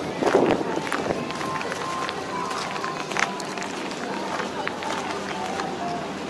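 Footsteps on gravel as someone walks, over indistinct background voices of people nearby.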